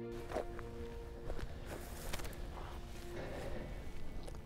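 Background music fading out in the first second. It gives way to faint outdoor ambience with soft, irregular footsteps on a dirt track.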